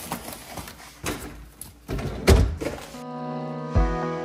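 Spice jars and bottles knocking and clattering as they are handled in a kitchen cabinet, with a heavy thunk about two seconds in. About three seconds in it cuts to background music with a steady beat.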